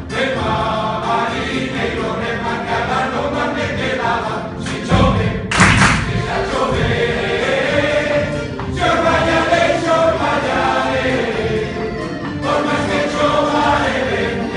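Male folk group singing a Galician song in chorus, accompanied by guitars, a plucked lute and accordion. About five seconds in, a loud thump breaks over the singing.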